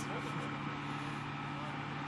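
Steady low engine hum, with faint voices in the background.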